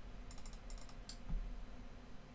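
A quick run of computer keyboard keystrokes, about half a dozen sharp clicks in the first second or so, over a low steady hum.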